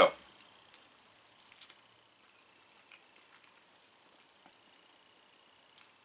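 Faint chewing of a bite of soft waffle breakfast sandwich, a few soft mouth clicks over low room tone.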